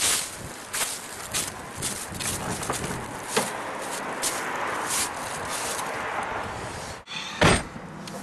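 Footsteps on dry fallen leaves as a person walks to a car, followed by the car door opening and a rustle of someone getting in. Near the end there is a single loud thud as the car door is shut from inside.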